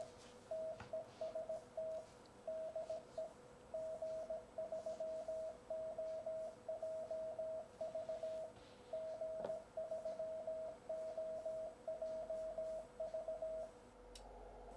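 Morse code sidetone from an Icom IC-7300 transceiver sending a CW test call, 'TEST TEST DE G3OJV', from its memory keyer while transmitting: a single steady pitch keyed on and off in dots and dashes, stopping shortly before the end.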